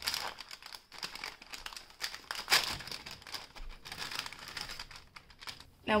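Crinkling and rustling of a translucent paper packet being handled and opened to take out rolls of washi tape, in irregular small crackles with one louder crackle about halfway through.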